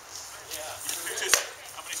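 A single sharp knock about a second and a third in, a sparring sword striking, with fainter knocks around it.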